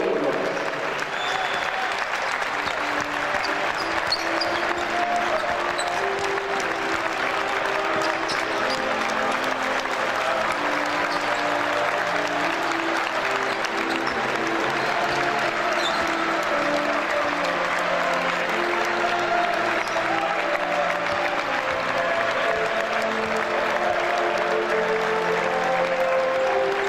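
Arena crowd applauding steadily under music with long held notes.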